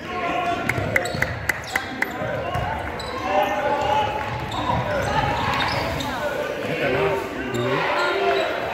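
Basketball dribbled on a hardwood gym floor, a quick run of bounces in the first two seconds or so, with players' and spectators' voices echoing in the hall through the rest.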